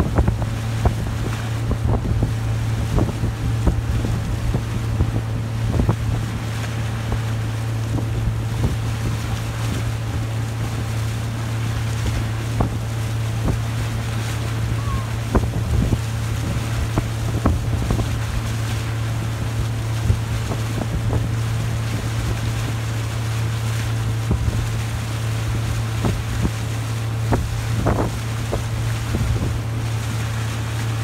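Motorboat engine running steadily at towing speed, a constant low drone under the rush of wind and wake. Wind buffets the microphone, with frequent short gusts.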